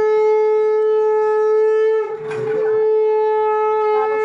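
Conch shell (shankha) blown in long steady blasts as the Bhai Phonta forehead mark is given. The note breaks briefly about two seconds in for a breath, then sounds again.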